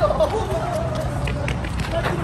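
Several people's voices talking and calling out over a low, steady traffic rumble, with quick running footsteps on concrete.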